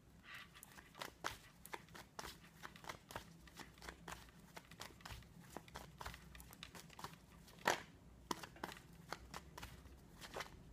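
Rider-Waite tarot cards being handled: a string of light, irregular taps and snaps as cards are laid onto a wooden desk and the deck is squared and shuffled in the hands, with one sharper snap about three-quarters of the way through.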